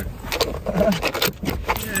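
A dog scrambling about on a car's front seat: collar tags jangling and a string of clicks, knocks and scrapes as it moves. The dog knocks the wiper stalk and the windshield wipers switch on.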